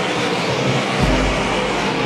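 Several dirt modified race cars' V8 engines running at speed on the track together, a steady dense engine noise with a deep low rumble coming in about halfway.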